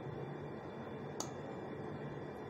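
Steady background hum, with a single sharp click about a second in from a metal fork touching the glass baking dish as it is drawn through a soft carrot cream layer.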